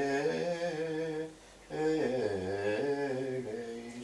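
Slow unaccompanied liturgical chant by a low voice, with long held notes. There are two phrases, with a short break about a second and a half in, and the second phrase sinks lower.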